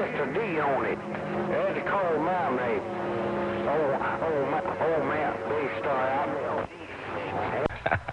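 A distant station's voice heard over a CB radio's receiver, indistinct, with steady whistling tones running beneath it. The received signal drops off a little before the end, leaving crackle.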